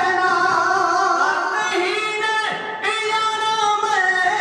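Men's voices of a Punjabi kavishri group singing together, loud and sustained, with no instruments. A short break comes a little before three seconds in, and the singing starts again.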